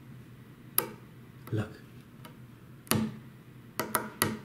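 A thumbnail picking at loose paint on the edge of a graphite tennis racquet frame, making about four sharp clicks: one near the start, one about three seconds in and a quick pair near the end. The red paint is flaking off because it is not adhering to the smooth white layer beneath.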